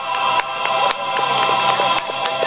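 Instrumental backing track playing out the end of a ballad after the vocal has stopped: held chords with a light beat about twice a second.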